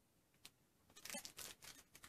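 Faint crinkling and crackling of a small folded jewelry packet worked at by hand to find where it opens: one soft click about half a second in, then a quick run of small crackles from about a second in.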